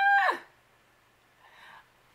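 A short high-pitched cry lasting about a third of a second, dropping sharply in pitch at its end.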